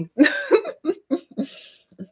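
A woman's short laugh: one sharp, cough-like burst followed by a few quick pulses that fade away.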